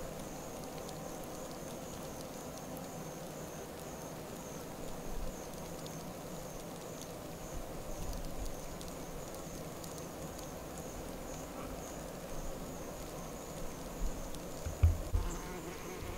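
Honey bees buzzing steadily at an open Flow Hive super as the colony works the frames. A couple of low bumps sound near the end.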